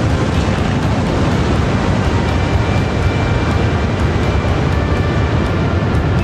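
Rocket motor of a long-range ballistic missile during launch and climb: a loud, steady rushing noise, strongest in the low end.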